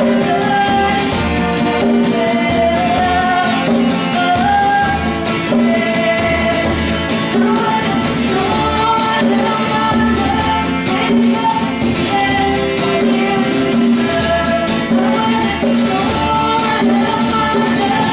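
Live acoustic folk song: a woman singing over strummed acoustic guitar and a hand-played conga drum, with violin in places.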